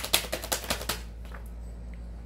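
A rapid run of crisp clicks from a tarot deck being shuffled, stopping about a second in; after that only a low, steady hum.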